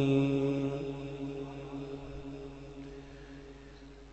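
The long held last note of a man's chanted Quranic recitation, one steady pitch that slowly dies away over about three seconds until it is nearly quiet.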